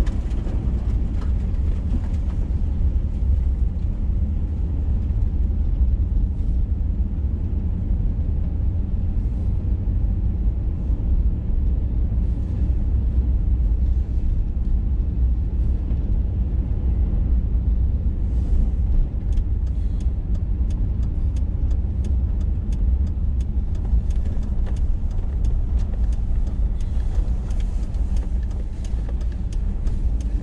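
Steady low rumble of a vehicle driving on a gravel road, heard from inside the cabin: engine and tyre noise. A run of light ticks comes about two-thirds of the way through.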